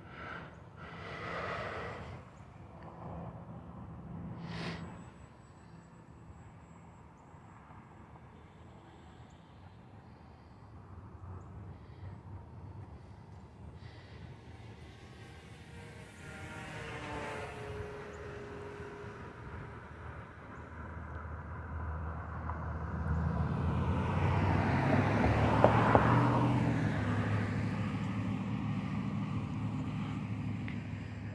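Electric motor and propeller of a Carbon Cub S+ RC plane buzzing overhead, the pitch falling as it passes about halfway through. In the second half a louder, lower rumble of a passing vehicle builds and peaks about four seconds before the end.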